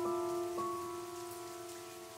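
Piano notes ringing out and slowly fading, with one soft new note about half a second in, over a faint patter of rain falling on still water.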